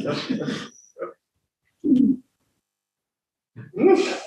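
A person's voice making sounds without words, in short separate bursts: a longer stretch at the start, single bursts about one and two seconds in, and a louder one near the end that runs into laughter.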